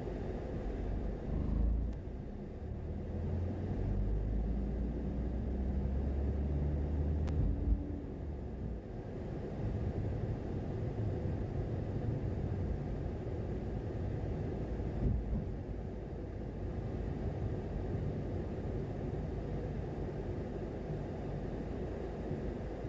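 Steady low rumble of a car driving along a city street: engine and tyre noise, with a few brief louder bumps.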